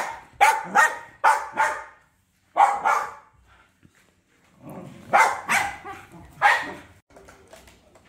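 Small white spitz-type dog barking in short, sharp barks: a quick run of about five at first, two more about a second later, then another three after a pause.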